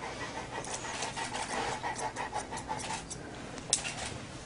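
Newfoundland dog panting in a quick, even rhythm that dies away about three seconds in, followed by a single sharp click near the end.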